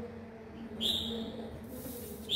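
Recorded bird call played through horn loudspeakers from a bird-trapping amplifier: a single high whistled note about a second in, over a faint steady hum.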